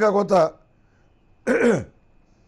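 A man's voice finishes a phrase, then after a pause clears his throat once, a short sound falling in pitch.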